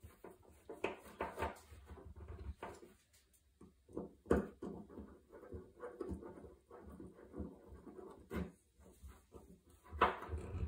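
Small clicks, taps and scrapes of hands handling a rebuilt aluminium fuel pump housing and its screws on a wooden workbench, with a sharper knock about four seconds in.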